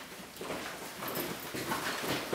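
Footsteps on a hard floor and clothes rustling as two people come together and hug, the steps and shuffling growing busier after about half a second.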